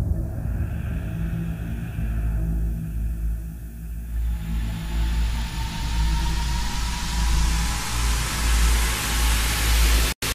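Cinematic trailer sound design: a deep sustained rumble, joined about four seconds in by a rising hiss that swells and builds toward the end.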